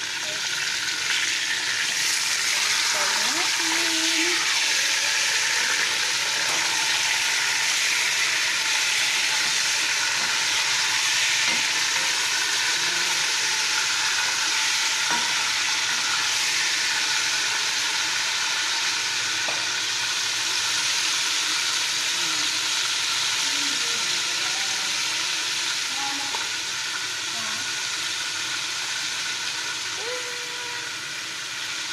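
Chicken pieces frying in hot oil in a deep pot, a steady sizzle, with a wooden spoon stirring and turning them now and then.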